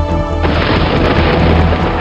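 Background music with a steady bass, joined about half a second in by a sudden thunderclap sound effect that rumbles on and slowly fades into rain-like hiss.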